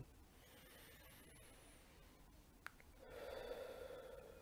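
A man breathing slowly during a counted meditation breath. After a few seconds of near silence and a faint click, a soft breath out through the mouth starts about three seconds in.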